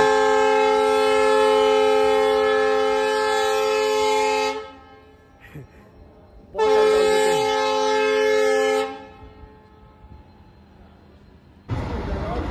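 A train horn sounding two long, steady blasts of several tones at once, the first about four and a half seconds long, the second about two. Just before the end, the steady running noise of a passing train comes in.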